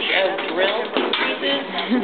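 Voices of people talking over music playing.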